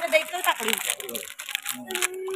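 Crinkling and crackling as a snack is handled, with soft voices underneath.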